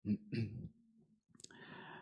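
Close-miked mouth sounds from a man at a handheld microphone: small clicks and a lip smack in the first half-second, a sharp click about a second and a half in, then a soft breath drawn in.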